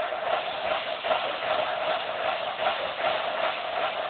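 High school band playing, recorded on a phone that turns it into a dense, smeared wash of sound.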